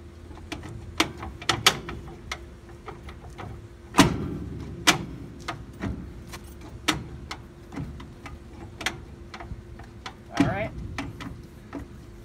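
Irregular metallic clunks and knocks as a rusty, hub-riveted front brake drum is rocked and tugged on its spindle, the heaviest knocks about four seconds in and near the end. The drum won't slide off: the brake shoes are holding it and need backing off at the star adjuster.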